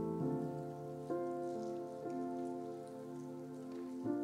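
Soft instrumental background music: sustained keyboard chords held and changing roughly once a second.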